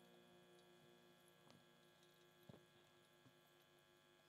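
Near silence: a faint steady electrical mains hum from the sound system, with a few faint taps.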